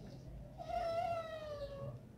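A single drawn-out, high-pitched call, starting about half a second in and lasting over a second, its pitch rising slightly and then falling away.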